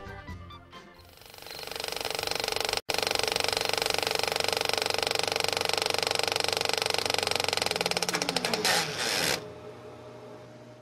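The tail of a song fades out, then a film projector's mechanical clatter runs steadily. Near the end it slows and cuts off, leaving a faint low hum.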